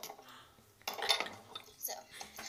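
Glass perfume bottles clinking and knocking on a desk as they are picked up and moved, a few sharp knocks about a second apart.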